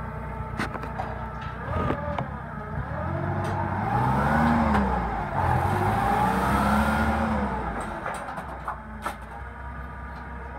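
Nissan forklift engine running as the truck drives off, its pitch rising and falling twice as the driver accelerates and eases off, with a few sharp clicks along the way.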